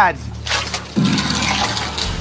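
Heavy rusty steel door being pulled open, a rushing scrape of metal starting about half a second in, with a low thump of the door about a second in.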